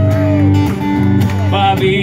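Live band music: strummed guitar over a bass line playing a country-style song. A held sung note fades out about half a second in, and the male singer's voice comes back in near the end.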